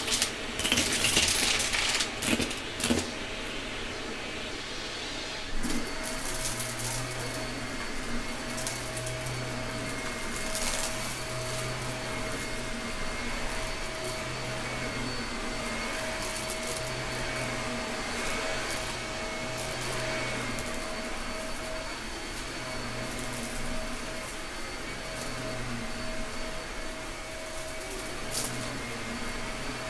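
Gray Shark vacuum cleaner running steadily while picking up a mix of small plastic spangles and bingo chips. The pieces clatter sharply as they are sucked in, mostly in the first few seconds and once more about five seconds in.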